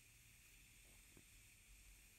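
Near silence: a faint steady hiss, with one tiny click about a second in.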